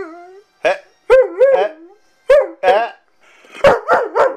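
A Weimaraner 'talking back': four bursts of drawn-out, howl-like yowling grumbles whose pitch wavers up and down, with short pauses between them. It is the dog's vocal protest at being told no.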